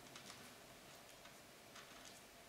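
Near silence with a few faint, light ticks and taps, scattered irregularly, as a hand touches and slides over tarot cards laid out on a wooden table.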